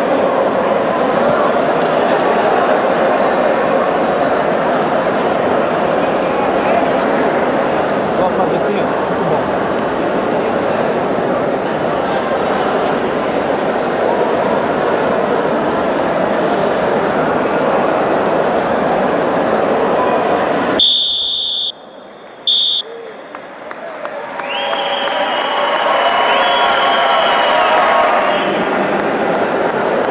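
Competition arena din of crowd and coaches shouting over a grappling match. About 21 seconds in, an electronic match-timer buzzer gives two short high blasts, the signal that the match time has run out. The noise drops sharply, then builds again, with another high steady tone a few seconds later.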